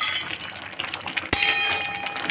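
A metal spoon strikes an aluminium kadai once about a second in: a sharp clink that keeps ringing afterwards.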